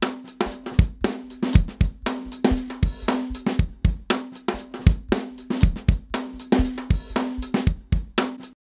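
A drum loop playing back from a DAW: kick, snare and hi-hat in a steady, busy beat, with a held low tone running underneath.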